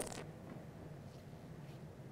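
Quiet pause with faint room tone. There is one soft click right at the start.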